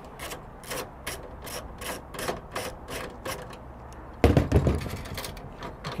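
Socket ratchet clicking steadily, about four to five clicks a second, as it backs out the load center's main lug bolts. A dull thump about four seconds in.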